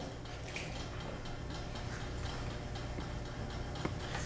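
Quiet lab room tone: a steady low hum with faint, regular ticks, and one sharper click near the end.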